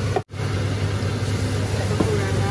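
Steady low hum with a hiss of kitchen background noise while a pot of curry cooks on a gas hob; the sound cuts out for an instant just after the start.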